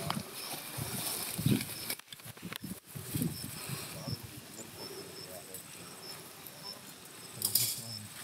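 Quiet outdoor field ambience: a faint, high insect chirp repeats at a steady pace over a soft hiss, with faint voices murmuring in the first second or so.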